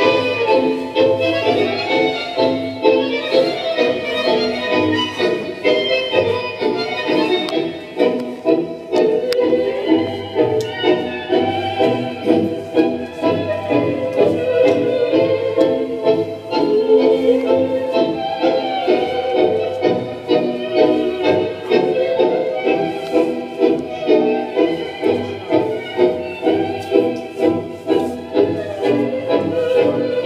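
Argentine tango music led by bandoneon, with a steady, strongly marked beat of about two pulses a second.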